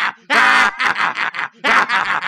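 A man's villainous cartoon laughter: a long drawn-out cry about a quarter second in, then a quick run of short cackles and another burst near the end.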